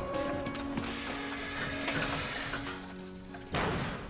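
Mechanical noise of a car being brought to a hard stop, under music, with a sudden loud burst of noise near the end.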